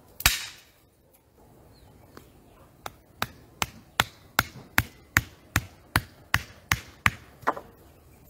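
A wooden stake being driven into the ground by steady blows: one loud sharp knock with a short noisy tail near the start, then, after a pause, a regular run of about a dozen sharp strikes, some two and a half a second.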